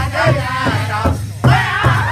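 Powwow drum group singing in high, strained voices over a large hide-headed powwow drum struck in unison by many sticks, a steady beat of about two and a half hits a second. The voices break off briefly a little past halfway, then come back in louder.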